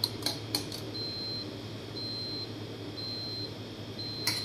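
Short high electronic beeps from an appliance, about half a second each and one a second, three times over, with a fourth starting at the end. Before them, at the start, come a few light metal clinks of a spoon against a steel milk pitcher.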